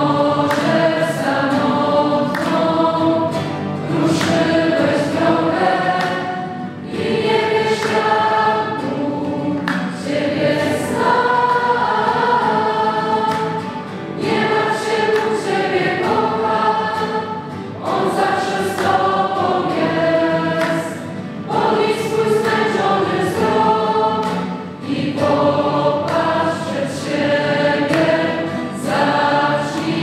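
A large group of young people, boys and girls together, singing a religious song. The song goes in sung phrases of a few seconds, with short breaks between them.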